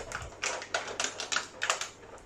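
Clear plastic blister packaging crinkling and clicking as it is handled and pulled apart, in an irregular run of sharp crackles.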